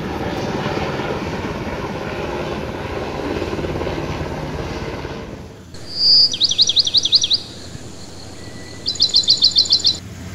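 Helicopter flying overhead with a steady rotor noise that cuts off sharply about five and a half seconds in. Then a bird calls in two loud, rapid series of high chirps, each lasting about a second.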